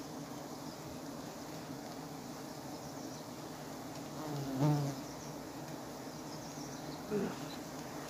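Giant honeybees (Apis dorsata) buzzing steadily as a swarm around their exposed comb on a tree trunk. The buzz swells louder briefly twice, about halfway through and again near the end.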